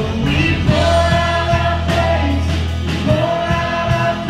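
Live contemporary worship band playing: several voices singing together, holding notes for about a second at a time, over drum kit, keyboard and guitar.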